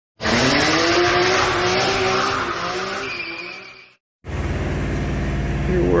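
Racing-car sound effect: a car engine note with tyre squeal, loud at the start and fading out about four seconds in. After a brief gap comes a steady low hum.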